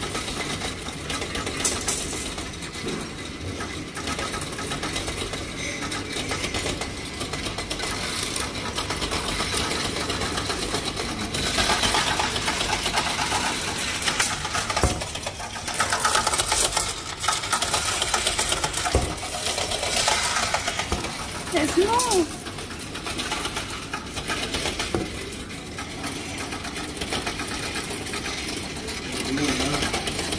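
Coin deposit machine running, a rapid, steady mechanical rattling of coins being sorted and counted as they are fed in, with louder stretches about twelve seconds in and again from about sixteen to twenty seconds.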